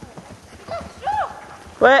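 Hoofbeats of a horse cantering on a dirt track, dull and fairly faint, with a loud shout from a person right at the end.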